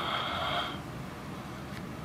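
Refrigerator running with a steady low hum, and a brief rustling scrape that fades out within the first second.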